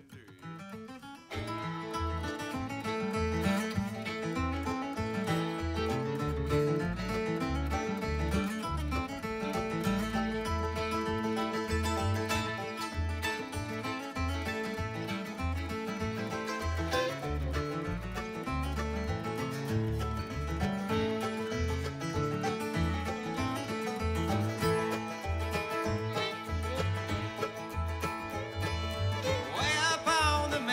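Bluegrass band playing an instrumental introduction on fiddle, acoustic guitar, mandolin, banjo and upright bass, kicking in about a second in with a steady bass beat underneath.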